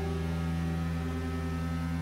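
Music: a held low drone chord, steady and fading slightly, with no new notes struck.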